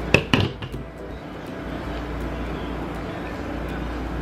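A few quick sharp snips of scissors cutting into a hard rubber toy in the first half-second, then a steady low hum of a room air conditioner.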